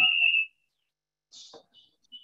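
Audio feedback from two microphones left on in the same room: a steady high-pitched whistle that fades out about half a second in, followed by a faint brief rustle.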